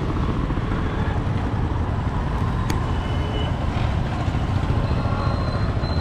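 Street traffic with motorbikes and scooters running past: a steady low rumble, with one sharp click about two and a half seconds in.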